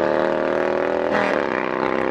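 Harley-Davidson motorcycle engines running, loud and steady, their pitch dropping about a second in.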